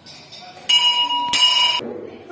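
Temple bell struck twice, about two-thirds of a second apart, each stroke ringing with a clear high tone.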